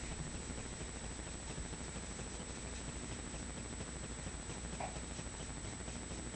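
Faint steady background hiss of room tone, with no distinct sound standing out and only a brief faint blip near the end.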